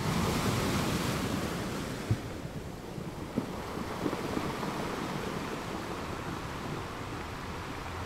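Ocean surf: a steady wash of breaking waves and foam, loudest at the start and slowly easing off, with a short knock about two seconds in.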